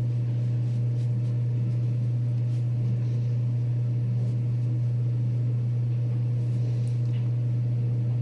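A steady low hum, even in level, with faint soft brushing of a makeup brush on skin.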